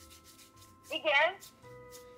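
Hands rubbing together palm on palm, a faint repeated swishing.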